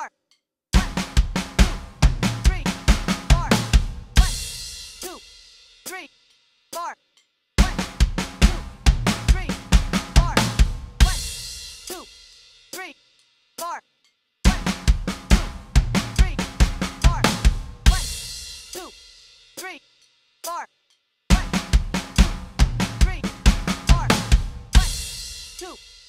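Roland electronic drum kit playing a one-bar fill four times at a slow 70 beats per minute. Each time, fast snare and rack-tom strokes run over a steady eighth-note bass drum and end on a crash cymbal that rings out. A few soft clicks of a count-off sit in the gaps between repetitions.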